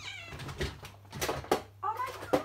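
A domestic cat meowing: a call falling in pitch at the start and another short call near the end, with a few sharp knocks and handling noises between them.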